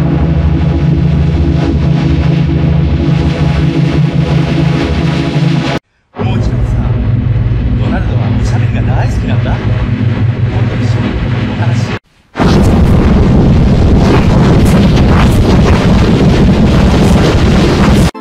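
Three renders of one sound clip, each run through a different extreme audio effect, about six seconds apiece and cut apart by brief silences. The audio is very loud and heavily distorted. The first render holds a thick low drone, and the last is a harsher noisy wash.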